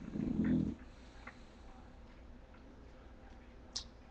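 A bulldog puppy gives a short, low-pitched grunt lasting under a second, followed by a few faint clicks.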